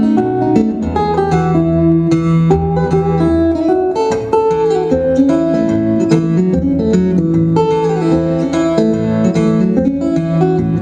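Solo guitar instrumental played live: plucked melody notes moving over held low bass notes, with a steady, bouncy pulse.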